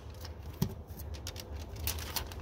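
Faint crackling and rustling of a lint roller's sticky paper sheet being handled, with a soft knock about half a second in, over a low steady hum.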